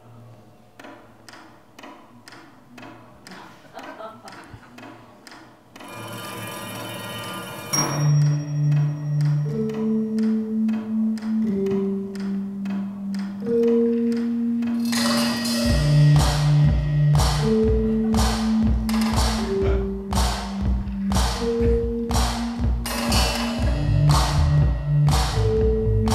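Music played on mallet-struck car parts and percussion instruments with held electronic bass notes. It opens with soft ticks in a steady rhythm that grow louder, then a rushing swell. A loud hit comes about eight seconds in, after which held bass notes sound under a steady beat of struck percussion, with a deeper pulse joining about halfway through.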